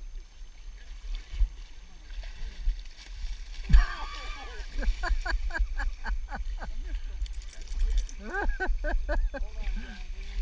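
Water splashing around legs wading through a shallow river, with a low wind rumble on the microphone. A thump just under four seconds in is the loudest sound. It is followed by a quick run of short, evenly spaced voice-like calls, about five a second, and a second, shorter run near the end.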